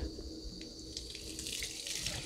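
Water running quietly and steadily as a bottle is refilled, getting a little stronger toward the end.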